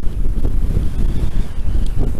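Strong gusting wind hitting the microphone: a loud, uneven low rumble of wind buffeting during a desert dust storm.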